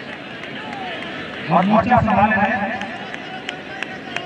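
A male commentator briefly speaking in Hindi over a steady background murmur from a spectator crowd.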